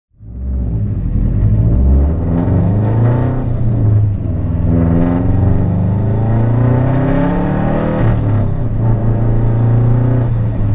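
Subaru WRX turbocharged flat-four heard from inside the cabin while driving, its engine note rising and falling in pitch several times as the car accelerates and is shifted.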